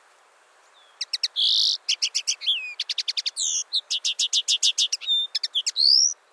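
Common linnet singing: a fast twittering run of short chirps and trills that starts about a second in.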